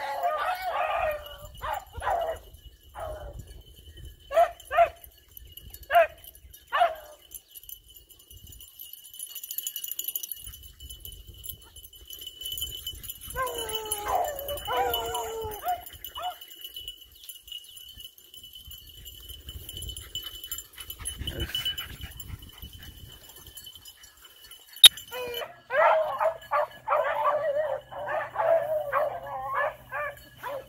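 A pack of beagles baying as they run a rabbit: single bays about a second apart at first, a burst of drawn-out bawling near the middle, then several hounds baying together near the end.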